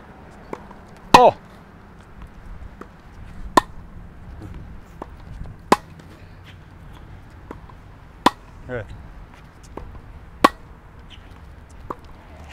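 Tennis rally: a ball struck by tennis racquets, with sharp loud pops about every two seconds and fainter hits and bounces between them. A brief vocal sound comes twice, about a second in and near the three-quarter mark.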